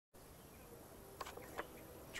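Faint steady background hiss with a few soft, brief clicks a little past the middle.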